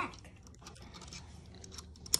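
A quiet pause with a few faint, light clicks and rustles of handling; the drill's motor is not running.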